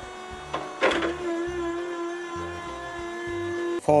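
Forklift sound effect: a clunk about a second in, then a steady mechanical whine that cuts off suddenly just before the end.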